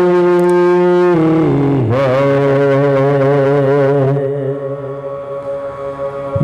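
Unaccompanied men's voices chanting a soz (Urdu lament): long held notes, sliding down to a new note about a second in, the lead voice wavering over a steady low held tone. It grows softer after about four seconds.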